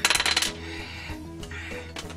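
A pen tossed down onto a glass-topped desk, clattering and bouncing in a quick run of clicks for about half a second, over background music.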